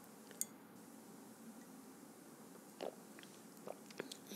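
Soft, quiet mouth sounds of someone sipping a drink from a glass and swallowing, with a small click about half a second in and a few faint wet smacks near the end, where a short "mm" is murmured.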